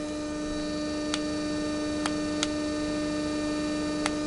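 Pulse motor–generator with a 24-pole rotor, running unloaded at about 1,500 RPM, giving a steady electrical hum with a high tone over it. A few faint ticks come through.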